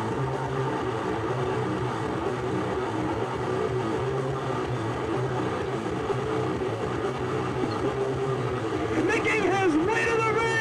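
Indistinct voices over a steady background noise on a camcorder microphone, with a higher-pitched call rising out of it about nine seconds in.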